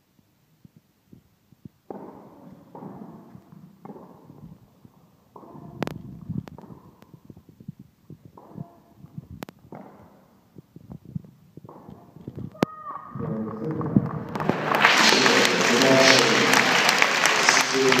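Indoor tennis: a few sharp racquet-on-ball hits among low voices, then, about three-quarters of the way through, loud applause and cheering from the spectators rises and holds, greeting the match-winning point.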